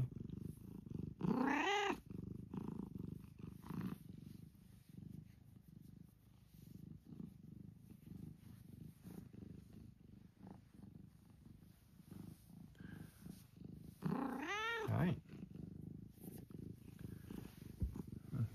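Domestic cat purring steadily while being stroked, a low continuous rumble. Twice a short voice rising and falling in pitch sounds over it, about a second and a half in and again near fourteen seconds.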